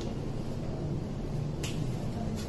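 Room tone with a steady low hum, and a single sharp click about one and a half seconds in.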